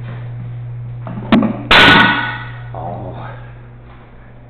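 A sharp click, then about half a second later a single loud bang that rings away in a small tiled room, over a steady low hum.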